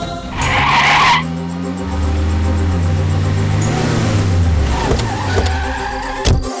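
Vehicles pulling up and braking: a short rush of skidding tyre noise about half a second in, then low engine sound sliding down in pitch as they slow, with background music underneath.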